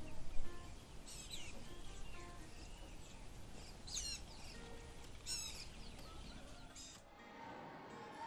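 Birds chirping outdoors: a few quick, high calls, each sweeping downward in pitch, about a second in, at four seconds and at five and a half seconds, over faint background noise. The birdsong stops about seven seconds in.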